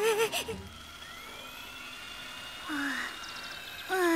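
A short laugh at the start, then quiet cartoon background ambience with faint thin high tones. A brief breathy, sigh-like voice sound comes about three seconds in.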